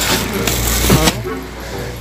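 Thin plastic shopping bag rustling and crinkling as it is handled, over a low rumble of passing road traffic.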